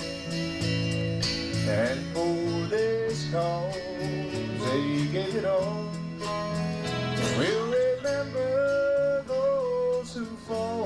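Live country music: strummed acoustic guitar under a melody line that slides between notes and holds long notes, with a male singer.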